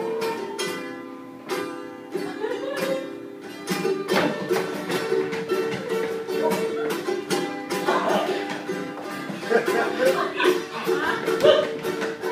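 Acoustic guitar played live, chords strummed in a steady rhythm with ringing notes.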